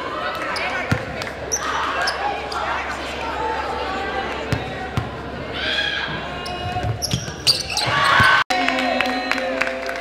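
A basketball bounced a few times on a hardwood gym floor as a player readies a free throw, over the echoing chatter of a gym crowd. Near the end the sound cuts abruptly to music.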